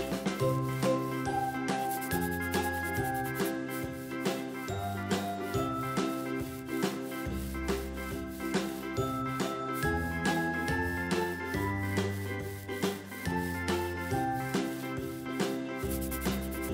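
Upbeat children's background music with a steady beat, a bass line and a light, tinkling melody.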